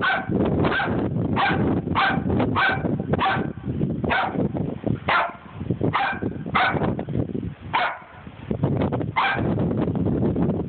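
A dog barking repeatedly, about a dozen short barks at uneven intervals, over a steady low rumble.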